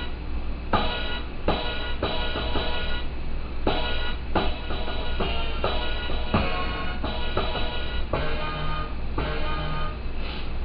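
Hip-hop beat playing from a drum-pad sampler: chopped sample hits over kick, snare and hi-hat in a steady repeating loop.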